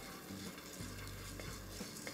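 Faint rustling and scraping of dry chana dal and urad dal stirred with a wooden spatula in a dry wok, with a few small ticks of the lentils. The dals are being dry-roasted without oil.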